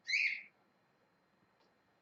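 A pet parrot gives one short, high-pitched call lasting about half a second.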